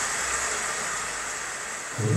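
A steady rushing hiss from the anime episode's soundtrack.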